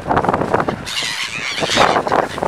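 Gulls calling, a harsh cluster of squealing cries lasting about a second from the middle of the clip, over wind buffeting the microphone.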